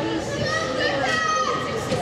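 High-pitched children's voices shouting and calling out, several overlapping, with a couple of longer drawn-out calls in the second half.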